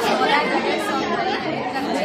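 Chatter of many people talking at once, overlapping voices.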